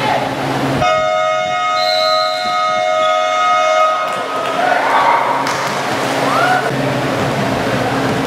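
Basketball gym's electronic game horn sounding one steady, even-pitched blast of about three seconds, starting about a second in. Players and spectators are calling out around it.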